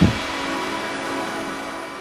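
Tail of an edited intro sound effect: a brief hit, then a hissing wash with faint held tones slowly fading away.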